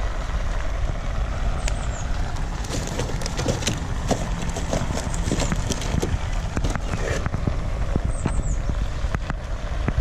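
Wood fire crackling in a Prakti wood-burning stove, with many small snaps over a steady low rumble, and knocks of sticks being pushed into the stove's fuel door around the middle.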